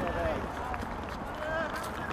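Footballers shouting short calls to one another across an open pitch, heard from the touchline over a steady low background rumble.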